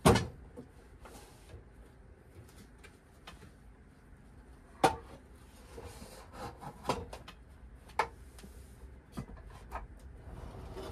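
Heavy lidded pots and a pan being set down in a metal pull-out kitchen drawer. There is a sharp knock at the start, another about five seconds in, then several lighter clunks and rubbing as the cookware is shuffled into place.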